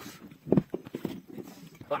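A kayak paddle knocking against the kayak's hull: one sharp hollow knock about half a second in, then a few lighter clacks.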